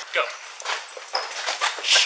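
Hurried footsteps and the scuffing and rustling of clothing and gear close to a body-worn camera as several people carry someone, after a short shout of "Go". A louder rustle against the microphone comes near the end.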